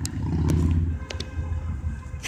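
Low, steady background rumble with a few faint clicks.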